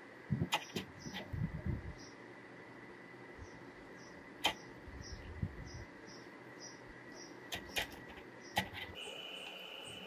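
Soft handling sounds of spices and paste being added to raw chicken in a ceramic plate and rubbed in by hand, with a few sharp clicks, a pair about half a second in and more near the end. A faint steady high whine and a faint regular chirping sit underneath.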